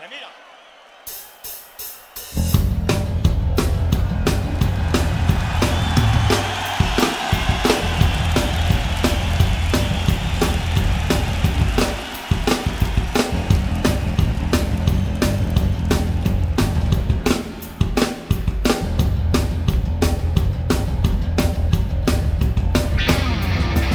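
Live hard-rock band starting a song: four quick clicks of a count-in, then drums, bass and electric guitars come in together about two and a half seconds in, with a driving beat on kick, snare and hi-hat. The band breaks off briefly twice, a little after halfway and again about three-quarters in.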